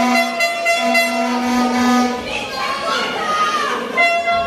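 A spectator's horn blown in long steady notes: one ends just after the start and another follows from about a second in to two seconds in. Crowd voices shout and call throughout.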